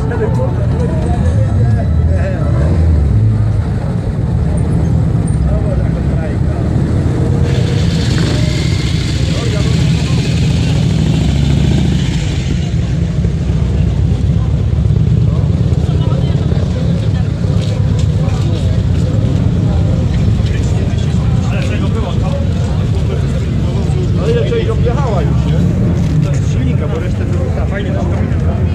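Motorcycle and trike engines running at low speed in a crowd, with people's voices mixed in. A steady low rumble lasts throughout, with a brighter, noisier stretch for a few seconds near the middle.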